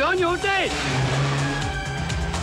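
A man's shouts, then a Land Rover's engine running under load, with film-score music underneath.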